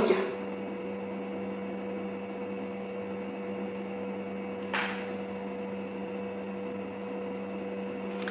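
A steady hum of two constant tones, one low and one higher, over a light hiss. A brief soft rush of noise comes a little past halfway.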